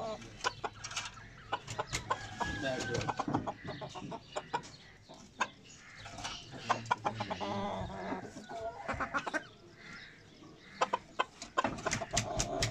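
Bantam chickens clucking, with short scattered calls among many brief sharp clicks and taps.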